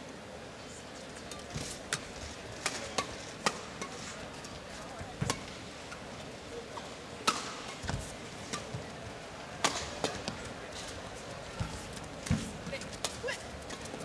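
Badminton rally: rackets striking the shuttlecock back and forth, a series of sharp hits at irregular intervals of roughly half a second to a second and a half, over a steady background noise of the arena.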